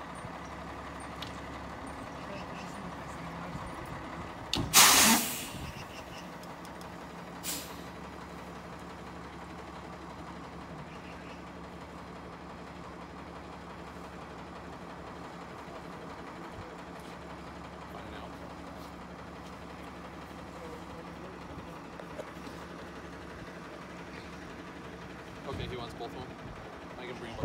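A fire engine's diesel engine idling steadily, with a loud hiss of air released from its air brakes about five seconds in and a shorter hiss a couple of seconds later.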